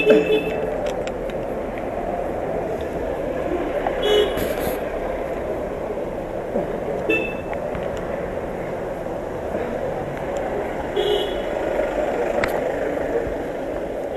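Street traffic noise with short car-horn toots every few seconds, each a flat tone lasting about half a second.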